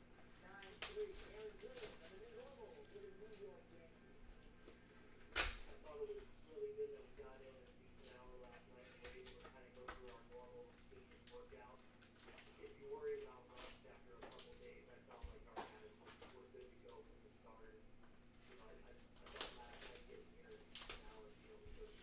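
Faint crinkling and tearing of a plastic-wrapped trading-card pack being unwrapped by hand, with sharp crackles about five seconds in and again near the end. A faint, indistinct voice sits underneath.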